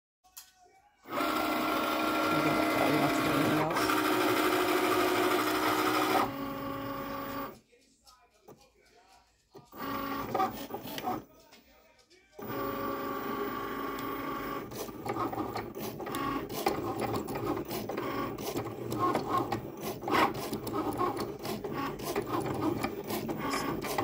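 Cricut Maker cutting machine cutting vinyl: a steady motor whine with several fixed pitches for the first few seconds, then, after breaks, stop-and-go whirring of the carriage and rollers with many quick clicks as the blade cuts the design.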